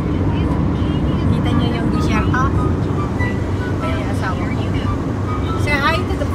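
Steady road and engine rumble inside a Kia car's cabin moving at highway speed. Brief snatches of a voice come through about two seconds in and again near the end.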